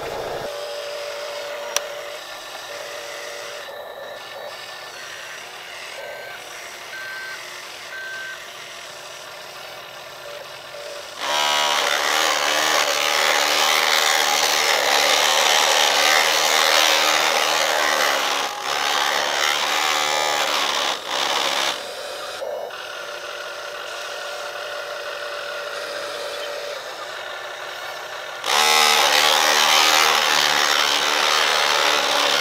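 Radio-controlled toy construction vehicles: a few short electronic reversing beeps over a low steady hum, then a loud whirring of an RC road roller's electric drive motor and gears as it runs. The whirring stops for a few seconds and starts again near the end.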